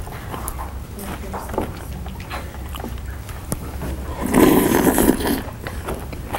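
Exaggerated loud eating by a person: scattered smacking and chewing noises, then a louder, noisy outburst about four seconds in that lasts about a second.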